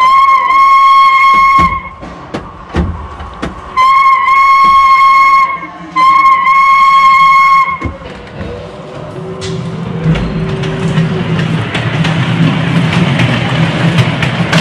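Recorded steam-locomotive whistle played by the buttons of a play train-cab control panel: three long, steady high whistles of about two seconds each. Then a low rumble builds over the last few seconds, fitting a small ride-on train rolling along its track.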